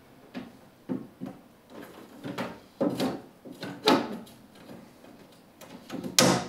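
Glass side panel of a collapsible terrarium being handled and fitted into its frame: a series of irregular clacks and knocks of glass against the frame, the loudest about four seconds in.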